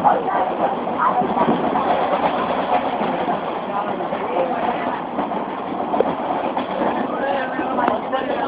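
A running passenger train heard from its open doorway: the steady noise of the carriage running on the track, with men's voices talking over it.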